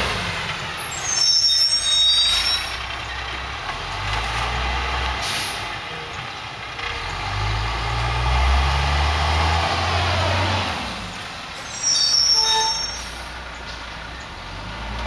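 Diesel engine of a Freightliner FL112 rear-loader garbage truck running, its pitch rising and falling through the middle. Two short hissing squeals of the truck's air brakes come about a second in and again near the end.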